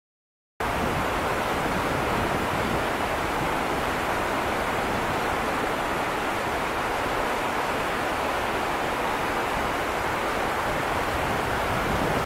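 Rocky mountain river rushing over a boulder-strewn bed: a steady, even rush of water that starts abruptly about half a second in.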